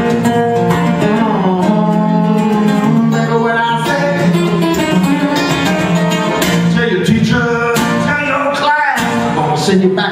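Live solo acoustic blues: a steel-string acoustic guitar played steadily, with a man singing over it at times.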